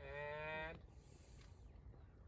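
A single short, steady pitched call lasting under a second at the start, rising slightly at the end, then quiet background.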